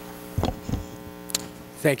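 Steady electrical mains hum through the hearing-room sound system, a stack of even tones, with two dull low thumps about half a second in and a short click just after a second; a man starts to speak at the very end.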